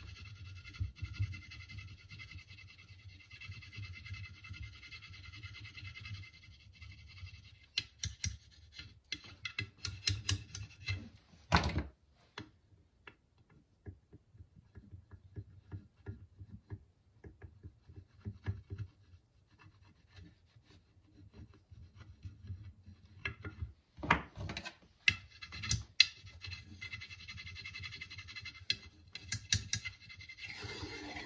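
A metal burnishing tool rubbing and scraping along a waxed wooden axe handle, pressing beeswax into the grain. The strokes come in spells, with one sharper knock a little before the middle and a quieter stretch of light ticks before the rubbing picks up again near the end.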